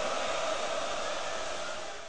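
A steady rushing noise that fades away near the end.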